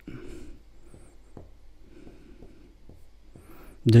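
Dry-erase marker writing on a whiteboard: faint scratching strokes with a couple of short high squeaks.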